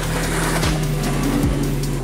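Twin outboard engines of a rigid inflatable boat running steadily at full throttle, with a rushing hiss of water and wind, under background music.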